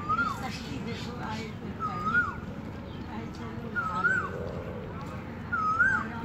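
A dog, likely one of the puppies, whining four times, about two seconds apart. Each whine is a short, high note that rises and then drops sharply.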